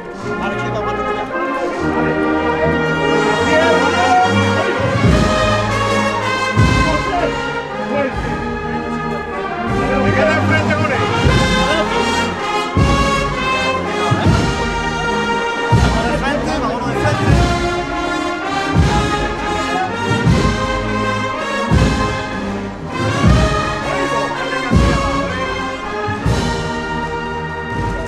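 Processional brass band playing a march, with a steady drum beat coming in about five seconds in.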